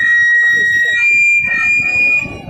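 Microphone feedback howling through the public-address loudspeakers: a loud, steady high-pitched squeal. It holds one pitch for the first half, then jumps to a higher pitch about halfway through.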